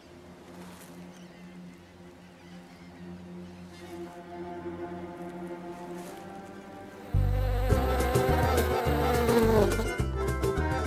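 Flies buzzing in a steady drone, with faint music under it; about seven seconds in, loud music with a heavy bass and a beat comes in suddenly and drowns it.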